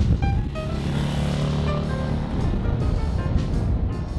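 1981 BMW R100 RT air-cooled flat-twin (boxer) motorcycle engine running as the bike rides by, with background music playing over it.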